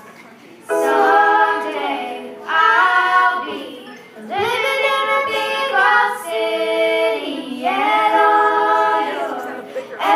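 Young voices singing a song together, in several sung phrases that begin under a second in after a brief lull, with little instrumental backing audible.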